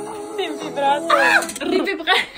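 Women's voices, speaking and making high, swooping vocal sounds. A held musical chord dies away in the first half-second.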